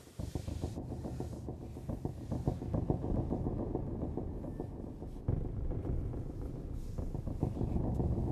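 A low, fluttering rumble that comes in suddenly and swells again about five seconds in.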